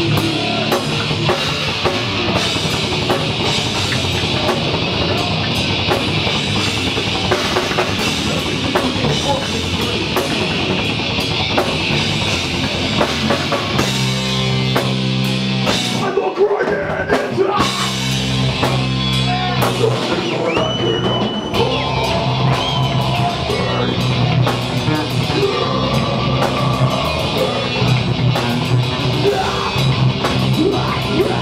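Live heavy metal band playing loud and fast, with pounding drums and distorted electric guitars. About halfway through, the drumming thins out briefly under held guitar chords, then the full band comes back in.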